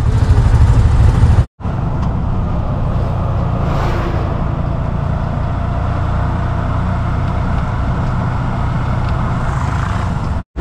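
Auto-rickshaw (tuk-tuk) engine running and road noise heard from inside its open cabin while driving, a steady low rumble. It breaks off to silence for a moment about one and a half seconds in, then the same steady drive noise carries on.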